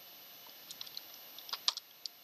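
Typing on a computer keyboard: a quick run of about ten keystrokes in the second half, the loudest one near the end.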